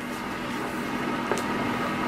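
A large picture-book page being turned by hand: a soft paper rustle and slide with a faint click about a second in, over a steady low hum.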